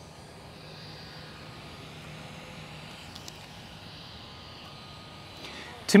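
Faint, steady outdoor background with a low, even engine hum from a distant vehicle or aircraft, and a couple of tiny clicks a little after three seconds in.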